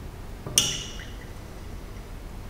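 A single glass clink about half a second in, ringing briefly. It comes from the glass conical flask knocking as it is swirled under the burette tip.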